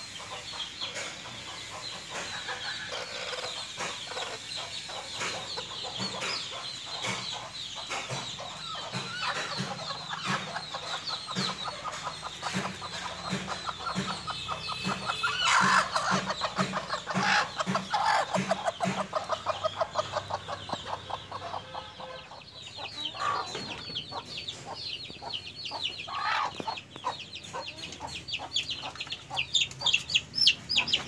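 Domestic chickens clucking, over a steady run of short, high cheeps. About halfway through comes a louder run of quick, evenly spaced clucks lasting a few seconds.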